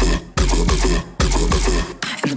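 Bass-heavy electronic dance music: a deep sub-bass with sharp, clipped percussive hits, cutting out briefly twice.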